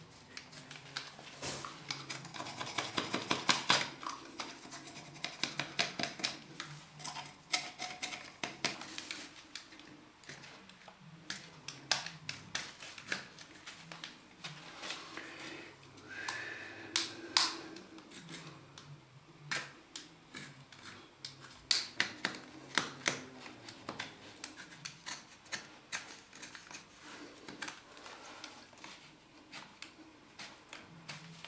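Stanley knife blade shaving the end of a lead pipe down in diameter: a run of short, irregular scrapes and clicks, busiest in the first few seconds.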